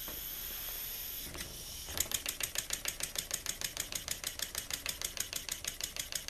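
Homemade oscillating-cylinder model steam engine run on compressed air. A steady air hiss at first, then about two seconds in the engine gets going and exhausts in a quick, even puffing rhythm, the single-acting cylinder venting through its port each turn. It runs smoothly.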